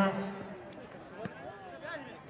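A man's loud drawn-out "ho" call that ends about half a second in, followed by fainter voices from the crowd around the pitch. A single thump a little over a second in.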